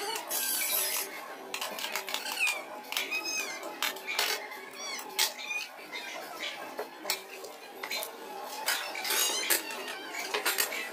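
Ceramic plates and dishes clinking and clattering with some rattle of cutlery as they are handled and stacked on a table, in many short irregular clinks.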